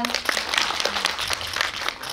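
Audience applauding: a dense patter of many hands clapping that starts right after a spoken thank-you and thins out near the end.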